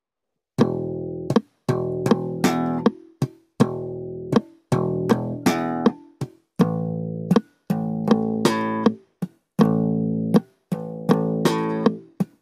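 Four-string electric bass played slap-style: thumb-slapped notes, muted ghost-note clicks and a bright popped high note, the same one-bar figure repeated four times, about three seconds each time.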